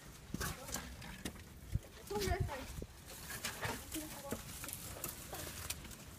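Footsteps climbing down a rocky gully: irregular clicks, knocks and scrapes of shoes on loose stones and rock, with faint voices in the background.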